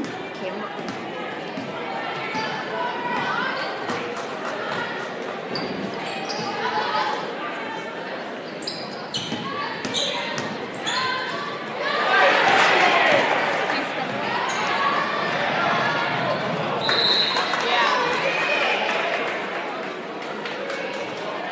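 Spectators talking in a gymnasium while a basketball bounces on the hardwood court, with the hall's echo. The crowd noise swells for a couple of seconds about twelve seconds in.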